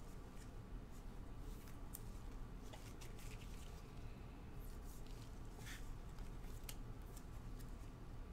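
Faint handling sounds of a trading card and a rigid plastic card holder in gloved hands: scattered light clicks and scratches as the card is slid into the holder. A low steady hum runs underneath.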